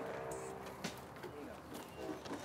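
Faint, indistinct human voice, with one brief click a little under a second in.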